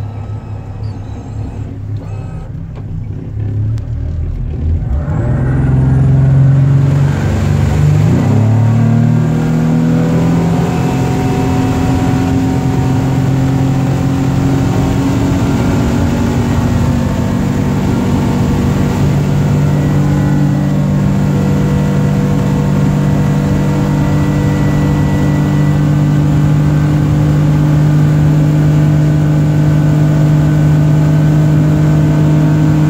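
Yamaha 250 V6 outboard motor accelerating the boat from low speed: about five seconds in it grows louder and climbs in pitch, then holds steady at high revs, around 5,500 to 6,000 rpm, rising slightly near the end.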